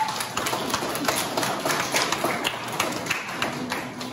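A roomful of people applauding, a dense patter of hand claps that goes on steadily.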